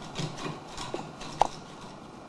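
Cat clawing and batting at a turned-wood rocking chair: irregular scratches and light hollow knocks on the wood, with one sharp knock about one and a half seconds in.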